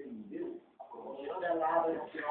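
Indistinct voices, with no clear words, getting louder in the second half.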